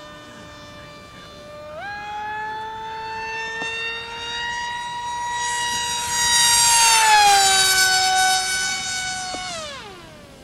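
High-pitched whine of an RC foamboard jet's 2400 kV brushless motor and 6x5.5 propeller on a 4S pack during a fast pass. The pitch steps up about two seconds in as the throttle opens, and the whine grows loudest around seven seconds in. Its pitch then sinks as the plane goes by, and it falls away sharply near the end as the throttle is pulled back.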